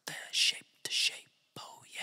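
A man's whispered vocal: three short, breathy, hissing syllables with no instruments behind them, the last one trailing away.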